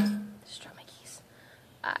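A woman's voice trailing off in a held low hum, then only faint breathy sounds before she starts speaking again near the end.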